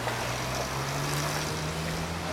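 A low engine hum that rises slowly in pitch, over steady city background noise.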